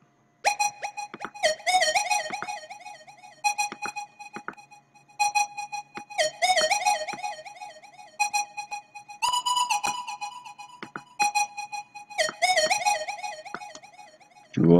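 Purity soft-synth 'Cheap Lead' preset playing a short repeating afro-trap lead melody: a bright, flute-like synth line of held notes broken by fast wavering trills, with the phrase reaching a higher note about nine seconds in.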